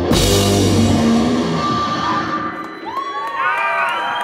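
A live doom/stoner rock band hits a loud crash together, with distorted electric guitar, bass guitar and drum cymbals, and lets it ring out. Near the end, rising-and-falling whoops come from the audience.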